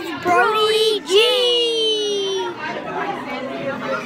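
Young children's voices talking and calling out, high-pitched, with one long drawn-out call that slowly falls in pitch about a second in.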